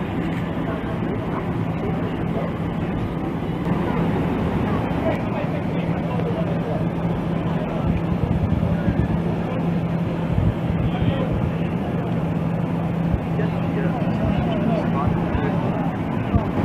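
Steady low engine hum with the murmur of a crowd of people talking beneath it.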